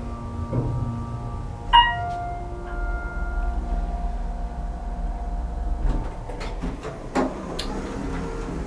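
OTIS holeless hydraulic elevator riding with a low steady rumble from its pump unit. About two seconds in the arrival chime sounds once and rings on. The rumble stops about six seconds in, followed by clicks and knocks from the door operator as the single-slide door starts to open.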